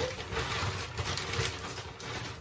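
A plastic shopping bag rustling and crinkling as gloved hands rummage in it and lift groceries out.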